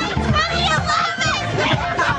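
Party music playing, with a crowd of young people talking and calling out over it.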